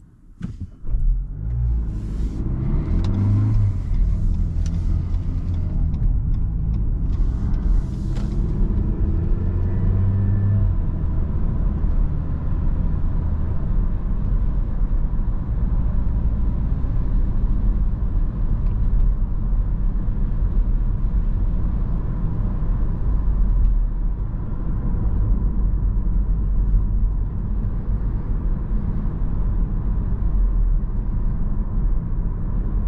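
Mitsubishi ASX II's 1.3-litre four-cylinder petrol engine heard from inside the cabin, pulling away from a standstill. It rises in pitch twice as it accelerates through the gears in the first ten seconds, then settles into a steady drone of engine and tyre noise at cruising speed.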